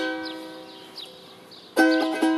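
Charango, a small ten-string Andean lute, strummed once and left to ring, fading slowly. Near the end a fresh strum starts a rhythmic strumming pattern.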